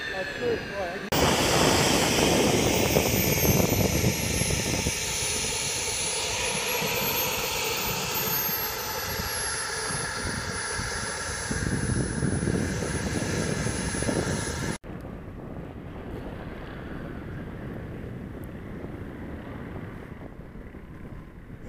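Radio-controlled model jet's engine running, a loud steady rush with a high whine that rises a little and falls back in the middle. The sound starts abruptly about a second in and cuts off suddenly about three-quarters of the way through, leaving quieter wind noise.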